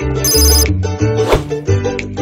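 Upbeat Latin-style guitar background music. About a quarter second in, a short high-pitched ringing sound effect plays over it, and near the middle there is a brief rushing hiss.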